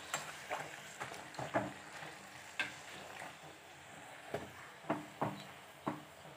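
Puri deep-frying in hot oil in a kadhai with a faint, steady sizzle, while it is pressed down to make it puff. Irregular light clicks of the metal slotted spoon against the pan come through it, about eight in all.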